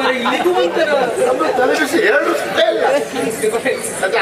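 Speech only: men talking back and forth in stage dialogue.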